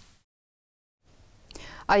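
A short dead-silent gap at an edit cut, then faint studio room tone and a soft breath before a woman's voice starts speaking near the end.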